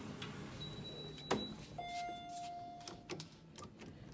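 Electronic elevator signal tones: a short high beep, a sharp click about a second in, then a longer, lower beep lasting just over a second, followed by a few light clicks.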